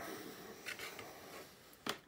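Faint rustling and handling noises of hands moving over a workbench, with one sharp click near the end.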